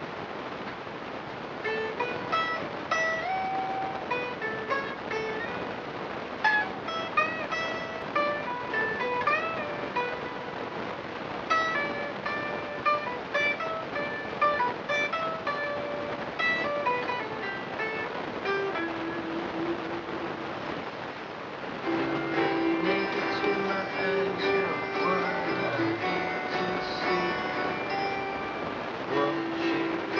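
Electric guitar played solo: a picked single-note melody with slides and bends, then, about two-thirds of the way through, fuller strummed chords.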